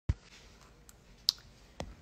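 Three separate clicks over faint room tone: a low knock right at the start, a sharp, brighter click just over a second in, and a duller tap near the end.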